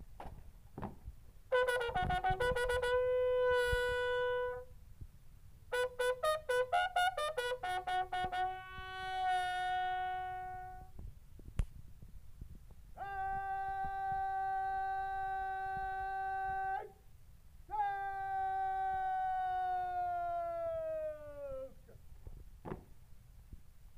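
A bugle sounding a funeral salute call in four phrases: two runs of quick tongued notes each ending on a held note, then a long steady note, and a final long note that sags in pitch as it dies away.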